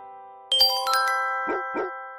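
Logo jingle: a quick upward run of bright, bell-like chime notes starting about half a second in, each note ringing on, with two short swishes near the end. A piano chord fades out before the chimes.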